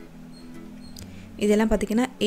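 A short lull with a faint steady background tone and two faint, brief high squeaks, then a voice starts talking again about two-thirds of the way in.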